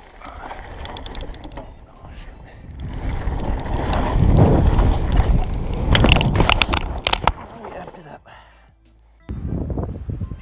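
Mountain bike rolling fast down a dirt trail, its tyres rumbling on the ground and growing louder. About six to seven seconds in comes a quick run of sharp knocks and clatter as the bike and rider go down, then the noise dies away.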